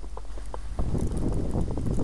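Footsteps crunching in snow, with rustling, becoming louder and denser about a second in.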